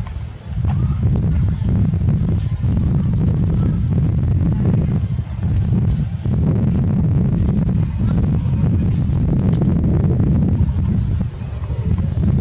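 Wind buffeting the camera microphone: a loud, steady low rumble that dips briefly about a second in and again near the end.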